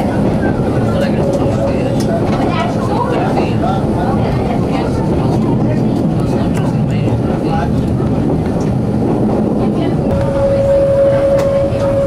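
A CP 9500-series diesel railcar running on metre-gauge track, heard from the driver's cab as a steady, loud rumble of engine and wheels, with indistinct voices under it. About ten seconds in, a steady single-pitched tone starts and holds.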